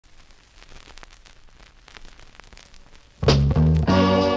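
Faint crackle and scattered clicks of a vinyl 45 single's surface. About three seconds in, a 1969 northern soul record starts playing, with bass and guitar.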